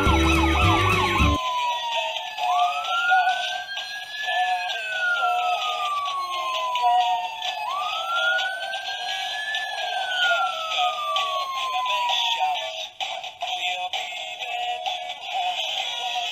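A siren wailing in slow rises and falls, each sweep taking a few seconds, over a bed of music whose lower notes drop out about a second and a half in.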